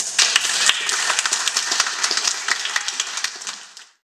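Audience applause, many hands clapping, starting suddenly just after the end of an unaccompanied song and fading out near the end.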